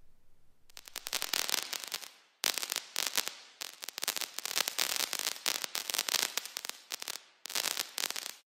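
Crackling fireworks sound effect: dense, rapid popping and crackling in several runs, broken by a few brief gaps.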